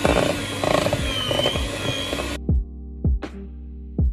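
White electric hand mixer running in cake mixture with a steady whirr, cutting off suddenly about two and a half seconds in. Background music with a steady beat plays throughout.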